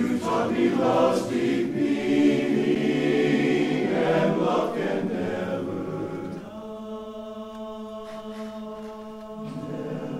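Men's barbershop chorus singing a cappella in close four-part harmony. About six seconds in they drop to a softer, long held chord for about three seconds, then move on.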